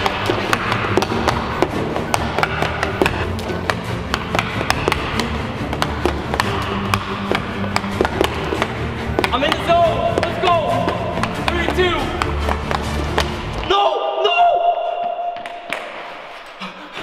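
Background music with a steady beat over rapid, irregular clacking of a hockey stick blade and puck tapping across a Super Deeker stickhandling board. The music cuts out about two seconds before the end.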